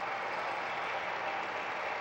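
Audience applauding: a steady, even clatter of many hands clapping.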